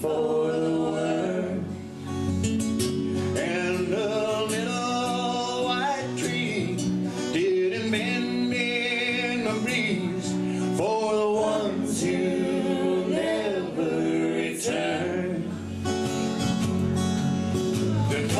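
A live song: singing over two acoustic guitars and an electric bass guitar.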